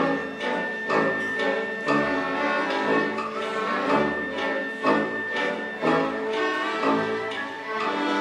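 Live orchestra playing, bowed strings together with brass, with accented notes coming about once a second.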